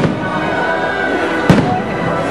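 Aerial firework shells bursting: a bang right at the start and a louder bang about one and a half seconds in, over music.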